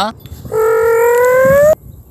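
A person's voice holding one long vocal note for about a second, starting about half a second in and rising slowly in pitch before cutting off.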